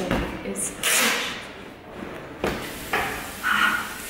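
Boxing gloves being taken off: handling sounds, a scratchy burst about a second in, and a sharp knock a little over halfway through.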